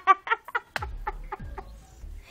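A chicken clucking: a run of short calls, about four or five a second, each dropping in pitch.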